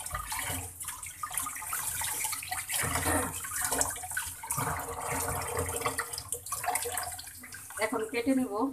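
Tap water running into a plastic bowl in a sink, splashing unevenly as hands rinse a fish under the stream.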